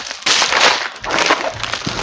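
Plastic mailer bag and padded paper mailer crinkling and rustling irregularly as they are handled.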